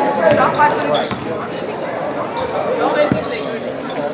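A basketball bouncing a few times on a gym floor, with indistinct voices around the court.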